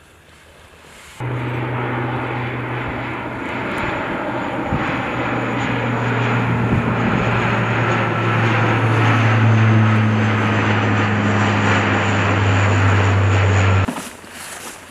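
Four-engine C-130J Super Hercules turboprop transport flying overhead, a loud steady propeller drone with a low hum that builds gently, then cuts off abruptly just before the end. The first second holds only faint wind.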